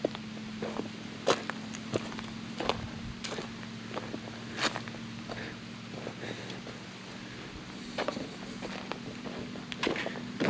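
Footsteps on dry leaf litter and dirt, irregular steps about one a second, over a steady low hum.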